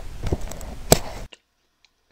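Steady hiss with a few sharp knocks, the loudest a single click about a second in. The sound cuts off suddenly to near silence just after.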